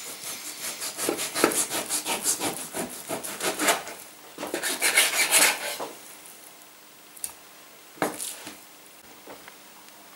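An ordinary kitchen knife sawing back and forth through a slab of raw sirloin beef onto a wooden chopping board, about three strokes a second for some four seconds, then a second shorter run of strokes as the steak is cut through. After that a couple of light knocks.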